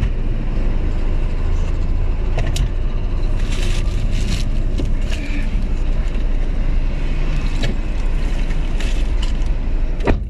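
Loud, steady low rumble of street traffic coming through an open car door, with rustling and a few short clicks as someone climbs into the passenger seat. The rumble drops away abruptly at the very end.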